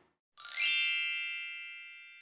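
A single bright chime sound effect, struck about half a second in and ringing away slowly.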